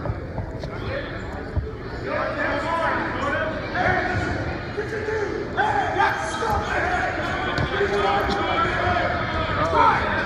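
Voices calling out in a large, echoing gym hall over scattered low thuds; the voices carry on and get louder from about two seconds in.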